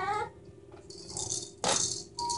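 A young child's high-pitched whining cry trailing off at the start, then quieter rattling noises and a short loud rattle about a second and a half in.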